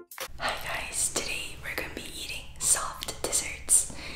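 Women whispering close to the microphone, with the hiss of the consonants standing out, over a faint low hum.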